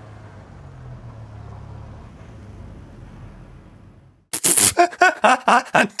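A low, steady car engine hum for about four seconds, then a man laughing loudly in quick repeated breaths.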